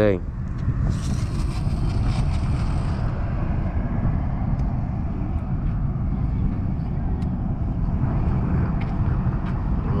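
Steady low rumble of outdoor background noise, with a brief hiss early on and a few faint clicks.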